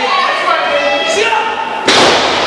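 Voices, then near the end one loud thud as a wrestler's leg drop lands his body on the wrestling ring's canvas.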